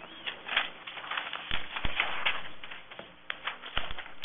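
Scattered light knocks and clicks, several of them deeper thumps, over a low background hiss.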